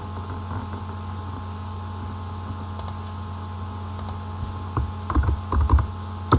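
Computer keyboard typing, a quick run of keystrokes starting about five seconds in after a couple of single clicks, over a steady low electrical hum.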